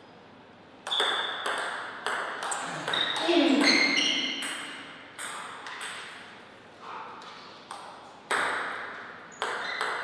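Table tennis ball struck back and forth in a rally, sharp pings off the bats and table about every half second, followed by a short shout with a falling pitch about three seconds in. Scattered ball bounces follow near the end.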